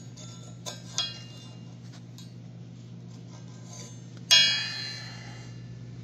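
A few faint metal clicks, then about four seconds in a single sharp metal-on-metal strike on the welded steel adapter plate that rings bell-like and dies away over about a second. A steady low hum runs underneath.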